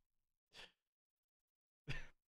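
Two short breathy exhales from a man, a faint one about half a second in and a louder one near the end, with near silence between.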